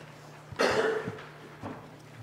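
A person coughing once, loudly, about half a second in, with a couple of small knocks after it and a low steady hum underneath.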